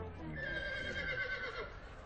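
A horse whinnying once: a wavering call of about a second and a half that falls slightly in pitch.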